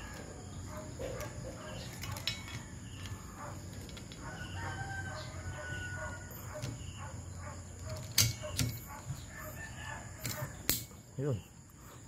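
Plastic rattling and clicking of a banana-type wiper blade's adapter being worked onto the wiper arm's hook, with a few sharp clicks in the second half as it goes into place. A faint drawn-out call sounds in the background in the middle.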